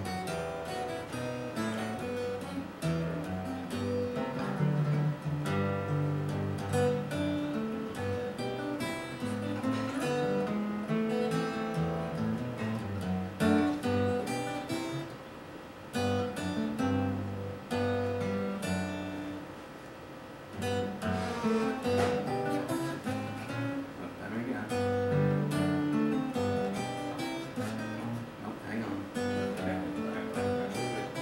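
Solo acoustic guitar playing an instrumental tune, picked melody notes over bass notes, with two short breaks between phrases.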